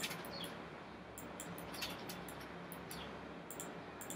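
A handful of short, sharp computer mouse clicks, some in quick pairs, over a faint steady microphone hiss.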